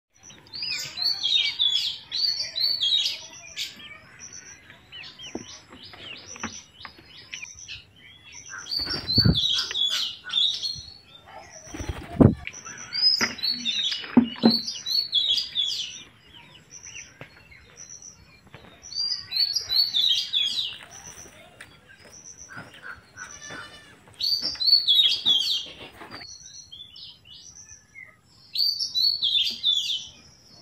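Ringneck parakeets chirping in repeated bursts of rapid, high, shrill chirps, each burst lasting two to three seconds. Two loud, low thumps come around nine and twelve seconds in.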